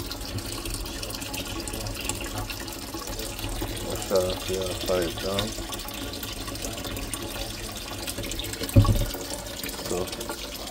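Kitchen faucet running steadily into a stainless steel sink, the water splashing. A single dull thump just before the end.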